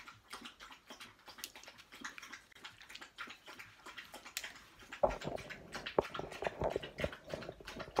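A dog eating dry food from a metal bowl: irregular crunching and clinking that starts suddenly and loudly about five seconds in, after a few seconds of faint scattered ticks.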